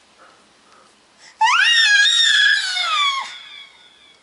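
An 11-month-old baby's high-pitched squeal, rising at the start, held for about two seconds and falling away, with a faint echo from a delay effect trailing off after it.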